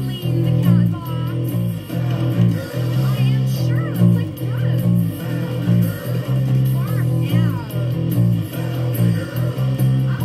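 Fender Precision bass with roundwound strings, picked through a Marshall bass amp, playing a steady, busy bassline over the original band recording, which carries higher guitar and voice parts.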